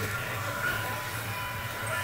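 Steady low background hum with a faint thin high tone above it.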